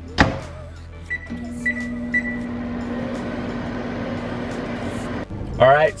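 A click, then three short high keypad beeps, and a microwave oven starting up with a steady hum that runs about four seconds before speech takes over near the end.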